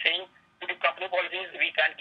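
Speech over a telephone line: a person talking, with the thin, narrow sound of a phone connection. There is a brief pause about a third of a second in.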